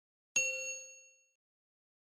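A single bright ding, the notification-bell chime sound effect of a subscribe animation, struck about a third of a second in and ringing out over about a second.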